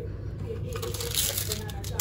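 Paper and plastic sachets of tea, coffee and sugar crinkling and rustling as a hand sorts through them in a tea tray, with a burst of crinkling about halfway through.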